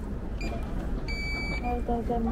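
Short electronic beep about a second in: one steady high tone lasting under half a second, with a fainter brief blip just before it. Background voices run underneath.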